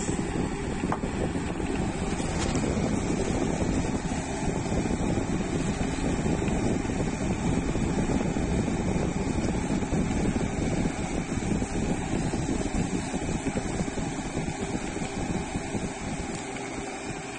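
Steady rumbling, buffeting noise, like air moving across a phone's microphone.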